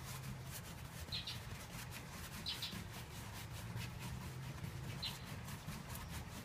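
A wide bristle brush scrubbing linseed oil over a dry oil painting on canvas in quick back-and-forth strokes, a faint repeated scratching. A bird chirps briefly three times.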